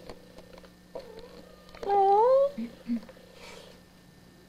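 Domestic cat meowing: one drawn-out meow, rising then falling, about two seconds in, after a fainter short call about a second in, followed by two short low sounds.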